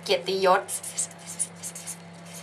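Hand writing: a pen scratching across a writing surface in quick, irregular short strokes, over a steady low electrical hum.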